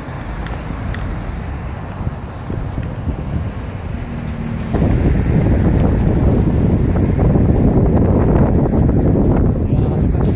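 Wind buffeting the microphone of a phone carried on a moving bicycle, a low rushing rumble with traffic noise underneath; it jumps sharply louder about halfway through and stays loud.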